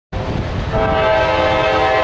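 CSX diesel freight locomotive's air horn sounding a steady multi-note chord, starting just under a second in, over the low rumble of the approaching train.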